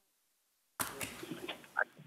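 Dead silence on a video-call audio line, then about a second in a sharp click as the line opens, followed by a faint spoken "I" and low room noise.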